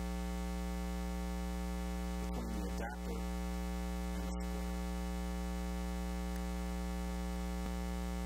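Steady electrical mains hum, a buzz with many evenly spaced overtones and an unchanging level, with a couple of faint clicks about three seconds in. It is the humming and buzzing a call recording picks up, which calls for a hum adapter.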